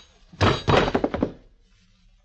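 Radio-drama sound effect: a loud, heavy crash of thuds about half a second in, lasting under a second before dying away.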